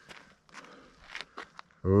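A few soft, scattered footsteps on a dirt trail in a quiet lull, then a woman's voice begins near the end.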